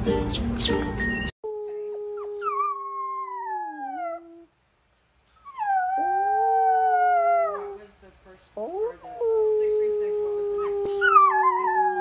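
Music stops about a second in, then a wolf pup howls three long howls, each sliding up at the start, holding, and falling away at the end.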